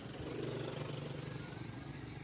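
Small Honda motorcycle engine running steadily as the rider pulls away.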